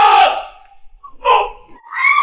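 Loud, angry shouting that breaks off about half a second in, then one short shout a little after a second.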